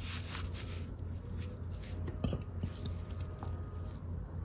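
Soft brushing strokes of a Chinese painting brush dabbing wet colour onto raw xuan paper, then a light knock about two seconds in, over a low steady hum.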